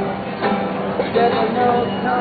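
Acoustic guitar played live, plucked and strummed notes ringing on.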